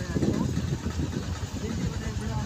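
A vehicle engine running with a steady low, pulsing rumble while the vehicle moves along a road.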